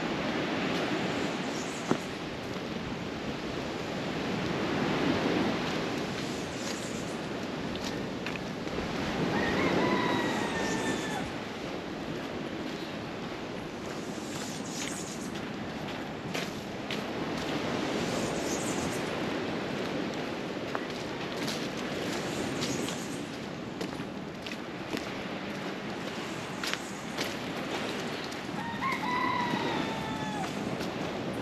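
A rooster crowing twice, once about ten seconds in and again near the end, each call a drawn-out, slightly falling cry. Under it, a steady rushing outdoor background that swells and fades.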